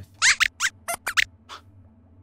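Voice of a robot lab-rat puppet character: a quick string of about six short, high-pitched squeaks, rising and falling in pitch, in the first second and a half.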